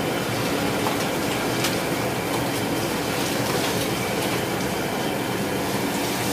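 High-pressure gas wok burner running at full flame under a pan of liquid, a steady rushing noise with a few faint clicks.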